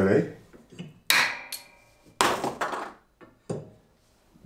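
Pendulum hammer of a homemade Izod impact tester swinging down and breaking a 3D-printed PLA test specimen. A sharp crack with metallic ringing about a second in is followed by a second, longer clatter about two seconds in and a small knock near the end.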